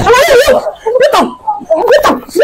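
High-pitched shouting and wailing from women struggling in a physical fight, the cries wavering in pitch and breaking off every half second or so.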